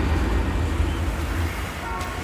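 A low, steady rumble that slowly fades.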